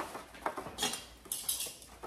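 Metal kitchen tongs clinking as they are handled, a quick cluster of sharp metallic clicks about a second in.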